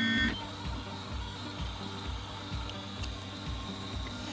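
Ultimaker 2 3D printer, fitted with an E3D v6 all-metal hotend and Titan geared extruder, printing a test piece: its stepper motors run steadily as the print head moves.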